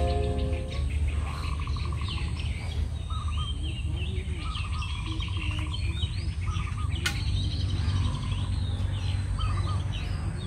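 Several birds chirping and calling, one repeating a quick trill, over a steady low rumble, with a single sharp click about seven seconds in. Background music fades out in the first second.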